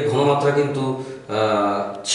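A man's voice speaking Bengali in two long, drawn-out, sing-song phrases with a short break about a second in.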